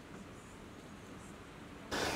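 Faint, steady background hiss with no distinct sound events.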